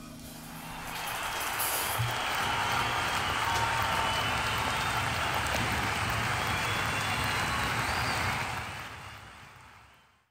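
Applause, which builds up as the song ends, holds steady, then fades out over the last second or so.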